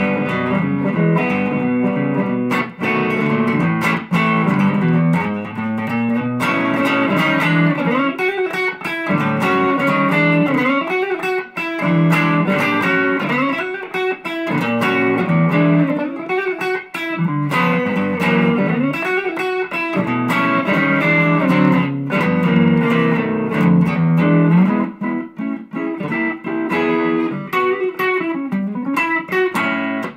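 2017 Fender Custom Shop Journeyman Stratocaster with Texas Hot Poblano single-coil pickups, played electric in a continuous flow of single-note lines and chords.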